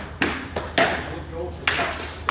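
Armoured sparring: three sharp, ringing sword blows, about a fifth of a second, just under a second and nearly two seconds in, as rattan practice swords strike helmets and armour.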